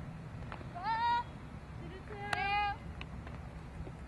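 Two short, high-pitched calls over a steady background rumble: the first, about a second in, rises in pitch; the second, past the middle, is held level.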